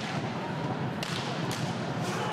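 Roller hockey play on an indoor rink: a steady rumble of skate wheels and crowd, with two sharp clacks of stick and ball about a second in and half a second apart.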